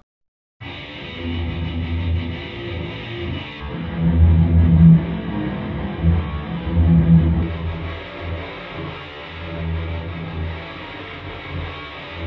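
Electric guitar played through a shredding distortion and a guitar-cabinet simulation, placed as if in an upstairs bedroom: muffled, with the highs cut off. It starts about half a second in, with low notes swelling and falling.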